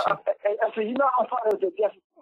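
A phone-in caller's voice heard over a telephone line, thin and cut off in the highs, with a single sharp click about a second and a half in.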